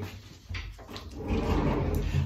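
Movement sounds close to the microphone in a small room: a knock about half a second in, then a louder low rumble in the second half, like a door being handled and someone stepping back to the chair.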